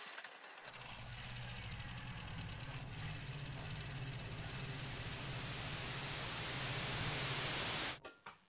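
Sound-effect soundtrack of a short film played in the lecture room: a steady low rumble under a hiss that swells toward the end, then cuts off suddenly.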